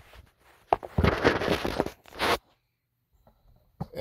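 Backing paper peeled off a sticky cardboard spider glue trap: a rasping, tearing rustle about a second long, then a shorter one. A single knock near the end.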